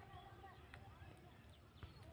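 Near silence: faint outdoor background with faint distant voices.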